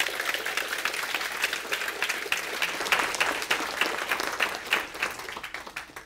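Small audience applauding, a dense run of hand claps that thins out near the end and stops.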